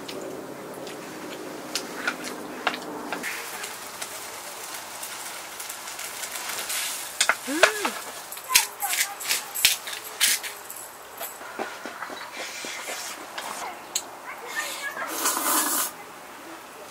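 Eating noise: stainless steel chopsticks and tongs clicking against a steel pot and bowl, with a run of sharp clicks in the middle and a loud noisy slurp of noodles near the end.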